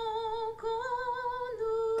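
A song extract played for a blind test: a high voice holding long, wordless notes with vibrato. The pitch steps up slightly about halfway through, with a brief dip just before.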